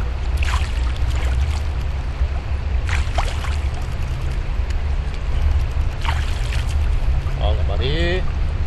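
River water running over rock with a steady low rumble, and a few brief splashes as hands rinse a lambari in the current.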